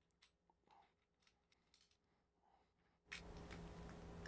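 Near silence, with a few faint, short metallic clicks from a tripod quick-release plate being screwed onto a camera's base with a coin. A low room hiss comes up about three seconds in.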